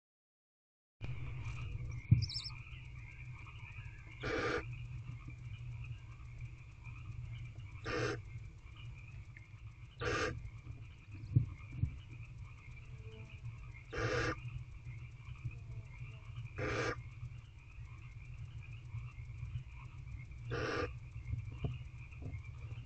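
Barn owlets' raspy hissing food-begging calls ('snores'), about seven in all, one every two to four seconds. Behind them runs a steady high chirring, with a couple of sharp clicks from movement in the box.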